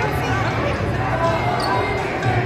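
A basketball bouncing on a hardwood gym floor during play, under the steady chatter of spectators' voices.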